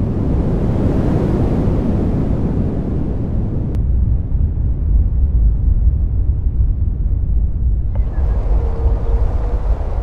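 Rushing, wind-like noise swells and fades over a deep steady rumble; about eight seconds in, the hiss comes back suddenly and a few faint held tones enter.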